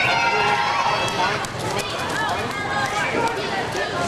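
Crowd chatter in a gymnasium: many spectators talking at once, with short clicks and footsteps from people moving on the wooden floor.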